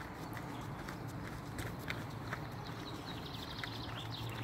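Footsteps on a gravel forest path at a walking pace, a couple of steps a second, over a steady low rumble, with a quick run of high ticks near the end.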